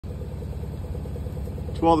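An engine running at a steady idle: a low, even hum with a fast regular pulse.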